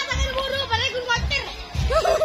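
Children's voices shouting and calling, one held for about a second, with music and low drum thumps from a drum band underneath.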